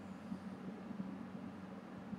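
Quiet room tone: a faint steady low hum under an even hiss, with no distinct sound standing out.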